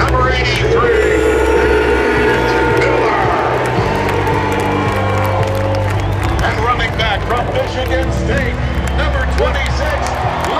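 Music with deep, held bass notes playing over a stadium public-address system, under a large crowd cheering and whooping.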